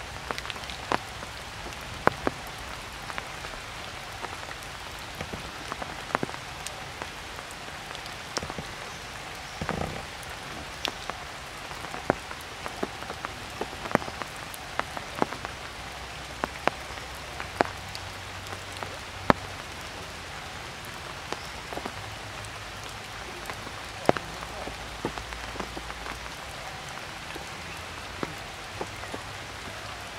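Rain falling steadily, with frequent sharp, irregular drop hits close by.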